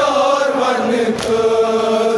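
A male reciter chanting a Kashmiri noha (Shia lament) through a microphone in long, drawn-out notes that glide slowly in pitch. There is one sharp slap about a second in.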